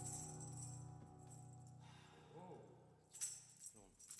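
A held harmonica chord played into a microphone, fading away over the first two seconds. Near the end come a few soft jingling rattles.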